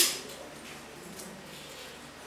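Faint clicks and rustles of a PVC conduit pipe and its bending spring being handled during a hand bend, with a sharp scraping noise fading out at the very start.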